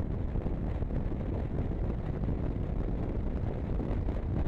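Steady wind rush on the microphone of a motorcycle at road speed, with the bike's engine and tyre noise blended underneath.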